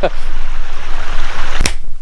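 Creek water rushing steadily, broken near the end by one sharp finger snap, after which the rushing cuts off.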